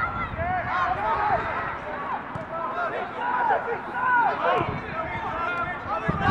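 Footballers shouting short calls to each other across an outdoor pitch, one call after another throughout, too distant for words to be made out.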